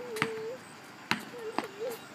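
Basketball bouncing on a concrete sidewalk as a child dribbles: two sharp bounces about a second apart, then a lighter one.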